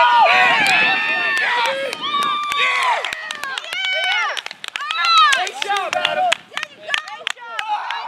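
Several men shouting and yelling over one another, with many short sharp clicks scattered throughout.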